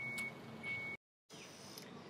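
A faint, steady, high-pitched beep, held for about half a second at a time with short breaks between. It cuts off abruptly about a second in to a moment of dead silence, followed by faint steady background hiss.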